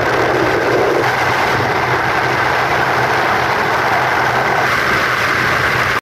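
Steady engine hum and road noise from a vehicle travelling along a paved road.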